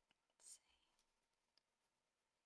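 Near silence with a short soft breathy hiss about half a second in and a few faint clicks from a makeup wand being handled.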